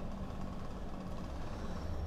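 Low, steady background rumble with a faint hum, the room's noise between words.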